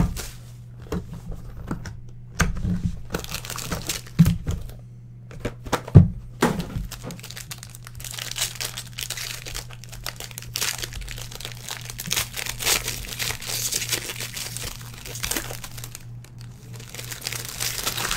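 A trading-card box and pack being opened by hand. There is a sharp knock at the start and a few thumps of cardboard over the next six seconds, then several seconds of continuous crinkling and tearing of a foil or plastic pack wrapper.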